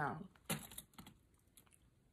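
A few faint short clicks and smacks of a person chewing a doughnut, coming about half a second to a second in, right after a spoken word.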